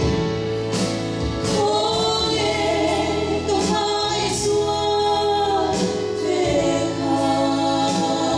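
Two women singing a duet into microphones, accompanied by an electric keyboard holding steady chords underneath.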